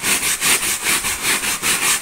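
Hand brush scrubbing mattress fabric to lift a stain, in quick back-and-forth strokes about four a second.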